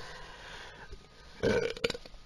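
A man burps once, a short belch about a second and a half in.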